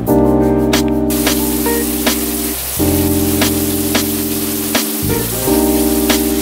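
Background hip-hop style music: sustained keyboard chords over a bass line with a beat about every two-thirds of a second. From about a second in, a steady hiss runs under it.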